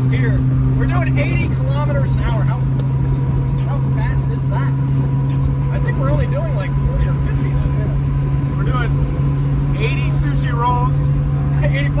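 Honda Acty 4WD kei truck's small three-cylinder engine running at a steady cruising speed, heard from inside the cab as a constant drone over road and wind noise.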